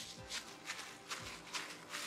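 Plastic food-handling glove rustling in repeated soft strokes, a few a second, as a gloved hand pats and presses soft sweet potato dough flat on a palm. Faint background music under it.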